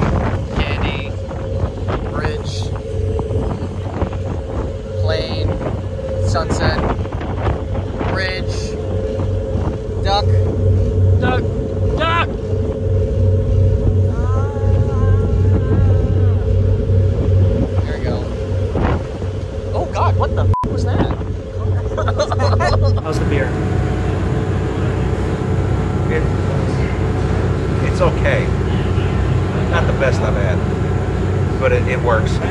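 A boat's engine runs with a steady low drone under indistinct voices. About three-quarters of the way through, the sound changes abruptly to a different steady hum made of several tones.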